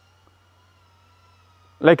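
Near silence with a faint steady whine and a low hum. A man's voice starts near the end.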